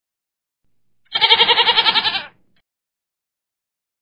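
A single animal call sound effect, about a second long, starting about a second in, with a rapid quavering warble.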